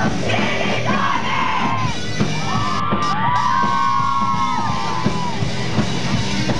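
Live pop-punk band playing loud with guitars and drums, with shouted singing and a crowd. A long held note sounds through the middle.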